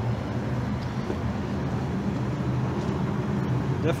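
A car's four-cylinder engine idling, a steady low hum.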